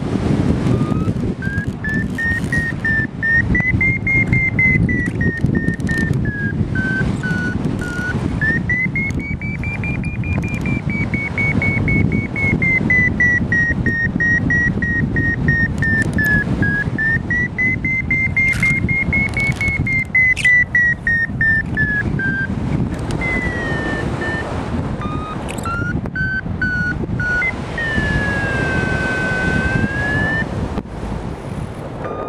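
Paragliding variometer sounding a continuous tone that slowly rises and falls in pitch as the climb rate changes, breaking into short beeps near the end, over steady wind rushing past the microphone.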